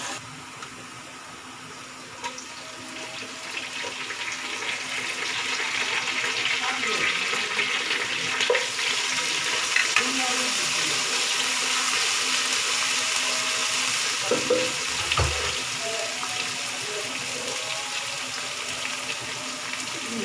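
Sliced onions frying in hot oil in a pot: a steady sizzle that grows louder over the first several seconds and then holds, with the occasional scrape and knock of a wooden spatula stirring them.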